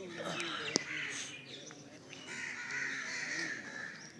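Birds calling, the longest call about two seconds in, over low voices talking, with a single sharp click about a second in.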